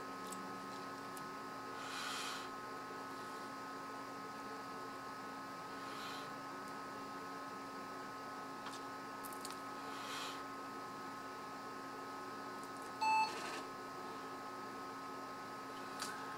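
Steady low hum of a rebooting PC, with a single short beep about 13 seconds in, the POST beep that signals the hardware check has passed before the boot menu loads.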